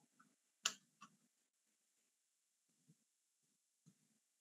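Near silence on an open video-call line, broken by one sharp click a little under a second in and a fainter click shortly after.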